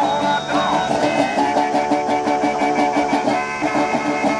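A metal-bodied resonator guitar and a harmonica on a neck rack played together by one performer, the harmonica holding long notes over the guitar, with a few bent notes near the start.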